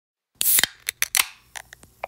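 A run of sharp clicks and snips: a loud cluster of several near the start, then about six lighter clicks spaced irregularly.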